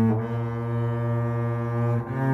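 Bowed double bass and trombone playing a slow melody together, changing note just after the start and then holding one long low note until another change near the end.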